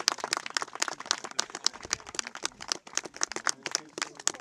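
A small audience applauding: scattered, uneven hand claps from a group of people.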